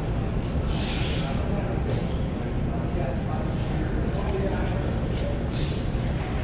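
A steady low rumble under faint speech, with a short hiss about a second in and another near the end.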